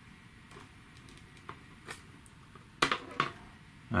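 Light clicks and taps of metal tools against a small LED circuit board during desoldering: a few faint ticks, then two sharp clicks close together about three seconds in.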